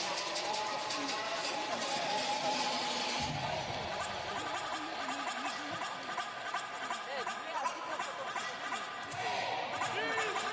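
Arena crowd noise: many voices shouting and cheering at once, with a dull thud about three seconds in.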